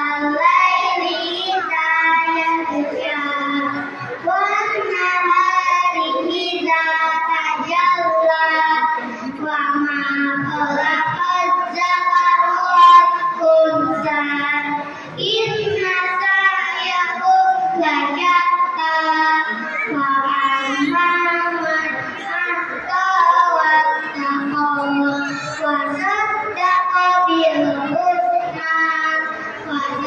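A group of children singing a song together, with sustained held notes and short breaks between phrases.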